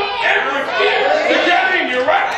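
A man preaching loudly into a microphone in a large hall, with other voices from the congregation calling back.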